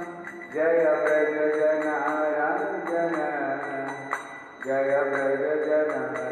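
A man singing a Hindu devotional chant (kirtan) in long melodic phrases, pausing briefly twice. A light, regular beat of strikes about three a second runs under the voice.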